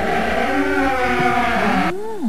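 A long, wavering creak of a large door swinging open, as a sound effect; it cuts off abruptly near the end.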